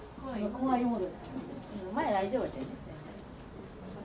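People's voices: two short vocal utterances, the first lasting about a second and the second, shorter one swooping up and down in pitch.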